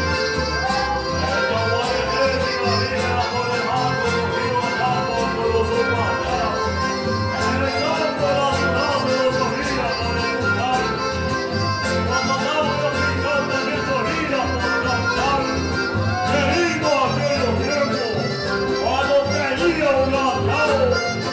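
Live chamamé music: two piano accordions playing together over a steady bass rhythm, with a man singing the melody.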